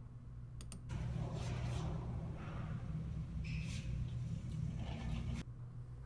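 A road bike being pulled by a bungee cord hooked to the bottom of its front wheel and rolling a short way across a hard floor, with clicks and handling noise over a low room hum. The sound cuts off suddenly a little before the end.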